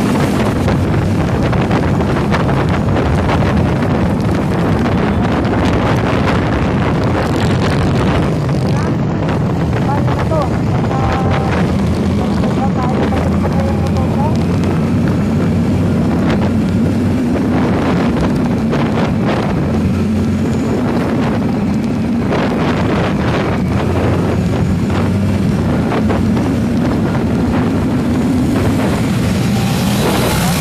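Heavy wind rush on the microphone over a running vehicle engine whose tone rises and falls as the speed changes.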